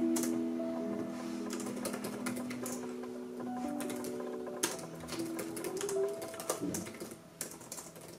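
Typing on an HP laptop keyboard: irregular quick key clicks, thickest in the second half. Soft piano music plays underneath.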